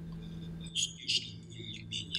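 Steady low electrical hum of a conference sound system during a pause in a talk, with two brief faint hissing clicks a little under a second in and about a second in.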